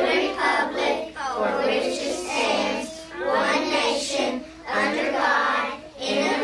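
A class of young children reciting the Pledge of Allegiance in unison, phrase by phrase with short pauses between phrases.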